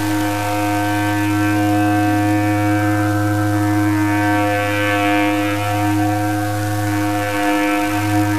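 Ship's horn giving one long, steady blast of several low notes held together, signalling the ship's departure; the lowest note briefly drops out near the end.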